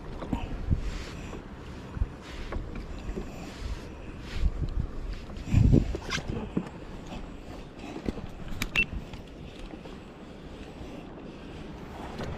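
Wind buffeting the microphone and water moving around a fishing kayak, with scattered knocks and clicks of gear being handled on board. The loudest is a heavier low thump about six seconds in.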